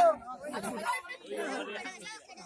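Several people talking over one another, quieter chatter following a loud shout just before.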